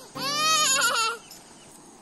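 A loud animal call, like a bleat, about a second long, its pitch curving and wavering, over steady background music notes.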